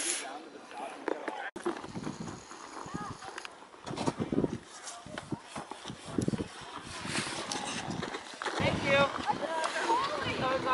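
Wind gusting on the microphone in irregular low rumbles, with indistinct voices that grow clearer near the end.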